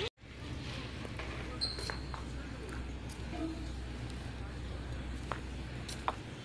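Outdoor ambience on a phone microphone: a steady low rumble of wind on the mic, with faint distant voices and a brief high tone about a second and a half in.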